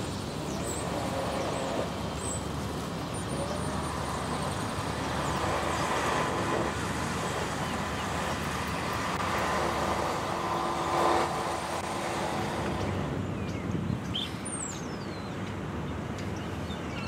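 Steady outdoor rumble of distant traffic and machinery carried across the water, with a few short bird chirps near the end.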